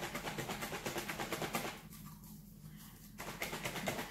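Liquid sloshing in a small plastic trigger spray bottle being shaken hard to mix neem oil into filtered water. The shaking is a fast, even rhythm that stops for about a second and a half in the middle and starts again near the end.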